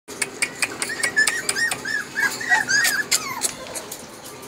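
Golden retriever puppies whining in a rapid string of short, high-pitched cries, several a second, with sharp ticks among them; the cries die away near the end.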